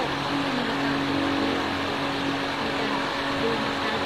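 Steady background hum: a constant low drone with an even wash of noise that does not change through the pause.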